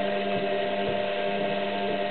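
Front-loading washing machine running: a steady motor hum with a few faint soft knocks.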